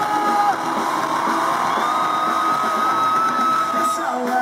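Pop-punk band playing live with crowd noise mixed in: a long held note slides up about a second in and is sustained until it cuts off near the end.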